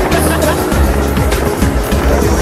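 Music playing over a fireworks display: a dense run of bangs and crackles, with heavy low booms.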